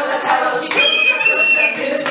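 A high, steady whistle note, doubled by a second close tone, held for about a second in the middle, with singing voices around it.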